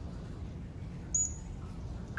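A trainer's whistle blown once about a second in, one short high steady note. It is the keeper's signal to the polar bear that he has done the behaviour right, here presenting his paw, and that food is coming.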